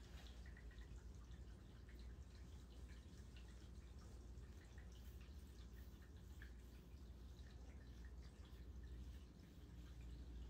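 Near silence: room tone with a low hum and faint scattered clicks.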